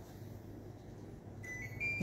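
Quiet room with a steady low hum; about three quarters of the way in, a short electronic beep sounds as two brief high tones, one after the other.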